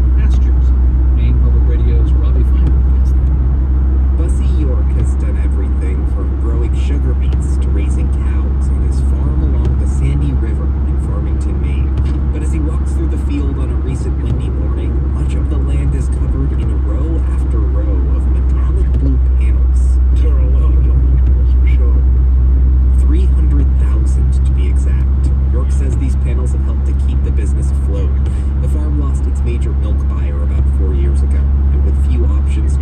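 Steady low drone of a car's cabin at highway speed, from tyres and engine, with muffled, indistinct voices underneath and scattered light ticks.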